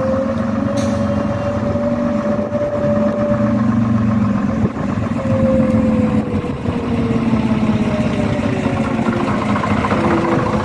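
Engine of a half-cab double-decker bus pulling up the street and passing close, with a steady low running note and a whining tone above it that rises over the first few seconds, returns briefly midway, then falls away.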